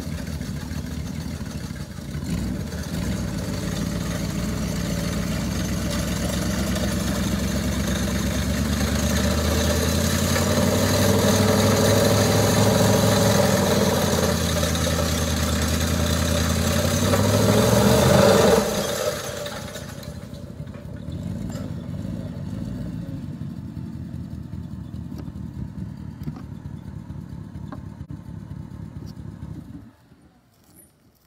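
Mechanical pecan tree shaker's engine running hard while its boom shakes the tree, with a rushing clatter of leaves, pecans and sticks coming down. The sound builds to a peak, then about nineteen seconds in the shaking stops and the engine drops back to a lower, steadier run.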